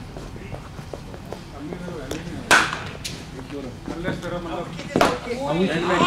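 A sharp crack about two and a half seconds in, typical of a cricket bat striking a hard ball, ringing on in a large echoing hall, then a second, quieter knock about five seconds in.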